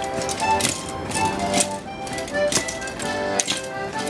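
Accordion playing a folk dance tune for a longsword dance, with sharp clacks about twice a second in time with it.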